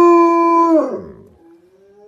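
A German Shepherd howling: one long, steady howl that drops in pitch and dies away about a second in, followed by a faint rising note.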